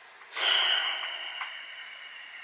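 A person's breath: a sudden hissing breath about a third of a second in, with a thin high whistle, fading away over about two seconds.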